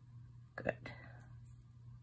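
Quiet room tone with a low steady hum, and a single word spoken softly, almost whispered, a little over half a second in.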